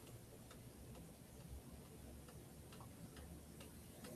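Near silence: room tone with faint, regular ticks.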